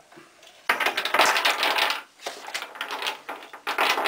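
Small painted puzzle cubes tipped out of their box, clattering onto a wooden desk in a dense rattle for about a second and a half, followed by lighter scattered clicks as the cubes are handled and gathered.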